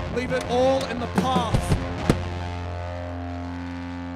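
Live rock band ending a song: drum hits under a singer's shouted, bending vocal line, then a last hit about two seconds in, after which a held chord from the amplifiers rings on steadily and slowly fades.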